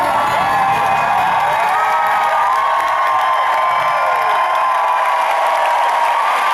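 Concert audience cheering and screaming, many high voices whooping with rising and falling pitch over a steady crowd roar.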